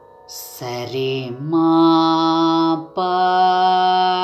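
A singer in Carnatic style holding long, steady notes over a faint continuous drone. The voice comes in about half a second in, and the held note breaks off briefly near three seconds before the next one.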